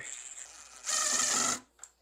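Cordless drill driving a caster mounting screw into a hollow-core door panel: one short run of the motor, under a second long, starting about a second in.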